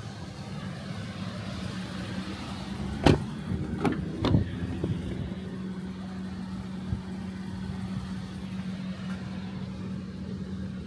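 Car door handle and latch clicking and knocking as the Toyota Corolla Altis's rear door is opened: a sharp knock about three seconds in, then two more over the next second and a half. A steady low hum runs beneath.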